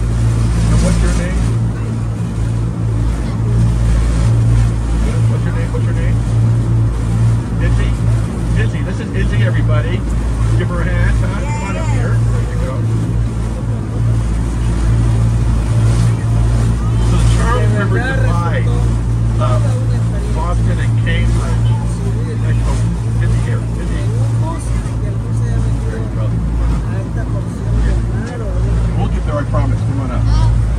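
Amphibious duck tour boat's engine running steadily under way on the water, a constant low drone, with passengers' voices faintly in the background.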